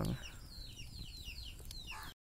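Birds chirping: a quick run of short, high, falling chirps, several a second, faint against a low background hiss.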